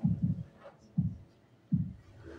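A steady, low, heartbeat-like thudding pulse, one soft thud about every three-quarters of a second, with a quick double beat right at the start.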